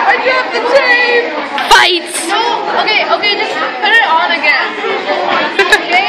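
Overlapping chatter of several young voices talking at once, with a sharp click a little under two seconds in.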